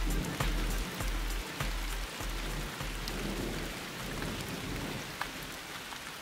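Steady rain falling, with scattered drips ticking through it and a deep low rumble in the first half that fades away.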